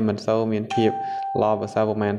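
A voice reading aloud without pause, with a single steady chime tone, a doorbell-like ding, coming in sharply about two-thirds of a second in and holding for about a second beneath the speech.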